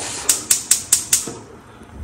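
A gas range burner being turned off: its spark igniter ticks rapidly as the knob passes the light position, about five sharp clicks in a second, over a hiss that fades out.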